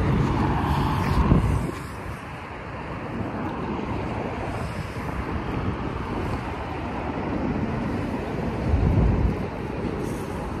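A road vehicle passing, loudest in the first second and a half and then fading, followed by steady road noise with wind buffeting the microphone. A low rumble of wind comes near the end.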